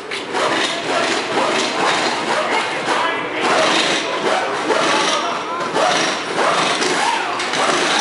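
Pneumatic impact wrenches whirring and rattling in short bursts as the lug nuts are run onto the race car's new wheels during a fast tire change, with voices around them.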